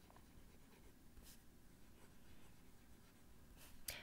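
Faint scratch of a Cross Townsend fountain pen's 18-karat gold medium nib writing on paper. The nib is not super smooth, with a little feedback, but not scratchy.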